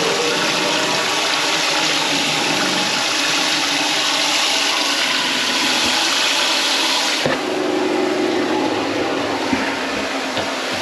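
Kitchen faucet running hard onto a rag being rinsed in a stainless steel sink. About seven seconds in the sound drops suddenly, leaving a softer noise and a few light knocks.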